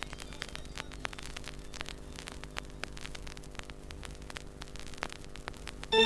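Vinyl LP playing the silent groove between two tracks: a steady hum under the crackle and ticks of surface noise. The next track's music comes in at the very end.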